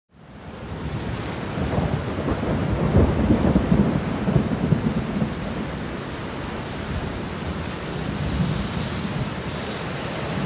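Rain with a long rumble of thunder, fading in at the start. The thunder is loudest from about two to five seconds in, then eases off, leaving steady rain.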